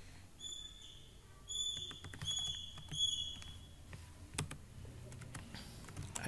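Computer keyboard keys clicking in scattered taps as a command is typed. Four short, flat, high-pitched chirps sound in the first half.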